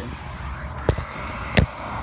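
Phone knocking twice against window glass, two sharp knocks about two-thirds of a second apart, the second with a duller thud, over a steady low outdoor rumble.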